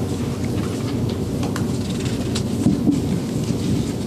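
Steady low rumble of room noise picked up by the meeting-table microphones, with scattered small clicks and paper rustling from papers being handled at the table.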